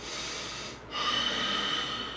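A man breathing out hard through his nose twice, the second breath longer and louder, as he holds in a laugh.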